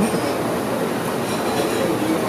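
Steady rushing background noise with faint, indistinct voices in it and a few brief high whistling tones.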